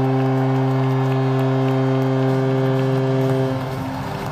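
Arena goal horn sounding one long steady low chord over a cheering crowd, cutting off about three and a half seconds in.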